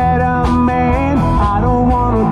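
Live band playing an upbeat country-rock song: electric guitars and drums with a steady beat, amplified through a PA.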